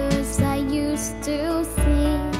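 A song: a girl singing a slow, gentle melody with held, wavering notes over acoustic guitar accompaniment.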